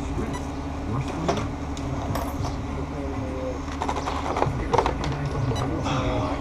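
Small clicks and clatters of hands working at a radio-controlled car's body and chassis, loudest in a cluster about four to five seconds in, over a steady low hum and faint voices.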